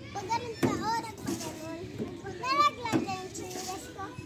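Young children's voices at play: high-pitched wordless calls and squeals in short bursts, the loudest about two and a half seconds in.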